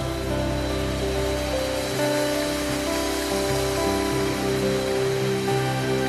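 Music from a choir performance: held chords that change slowly and run on without a break.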